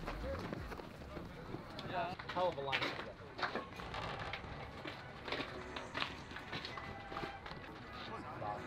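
Faint, indistinct voices calling out around a baseball field, with a few short clicks.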